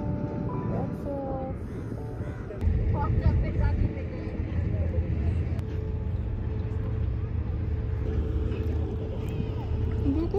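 Outdoor wind rumbling on the microphone, a rough low rush that gets louder about two and a half seconds in. Faint voices and a faint steady hum sit underneath, and background music fades out in the first second.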